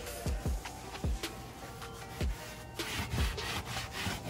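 A sponge scrubbing a wet, soapy black car seat in repeated rubbing strokes, with a few dull knocks as the seat is handled.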